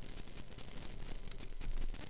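Steady background hiss from the recording microphone, with a brief high-pitched chirp about half a second in.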